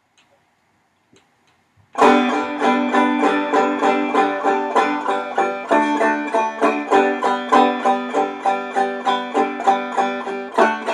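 Five-string banjo being picked in a steady, even run of notes, starting suddenly about two seconds in after a near-silent pause.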